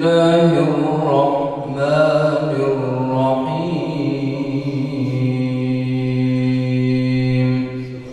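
A man's voice chanting Quranic recitation (tilawat) in the melodic, drawn-out qari style. It ends on one long low held note of about three seconds that stops shortly before the end.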